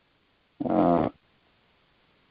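A man's voice making one short held vocal sound, about half a second long, shortly after the start, with silence around it.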